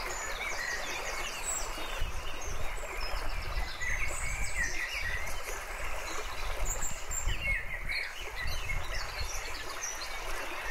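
Running stream with small birds chirping and twittering over it in short, scattered calls.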